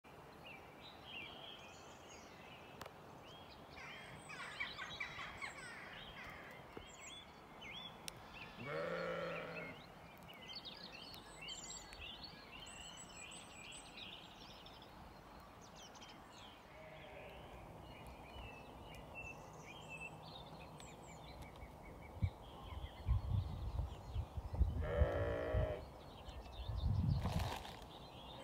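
Sheep bleating, one call about nine seconds in and another near the end, over small birds chirping and singing. Low rumbling thumps on the microphone fill the last few seconds.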